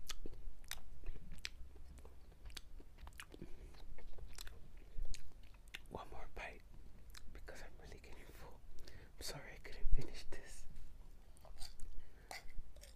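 Close-miked chewing of lasagna, with sharp wet mouth clicks scattered throughout. Louder clusters of mouth and voice sounds come about halfway through and again a little later.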